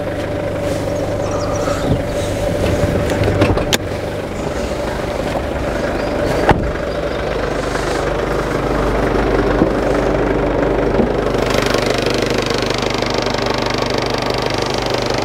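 Infiniti Q50's engine idling steadily, with two sharp knocks early on. The running sound grows louder over the second half.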